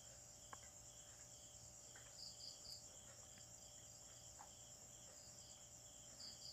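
Near silence: room tone with faint, regular chirping of insects, about two chirps a second, and a few soft ticks.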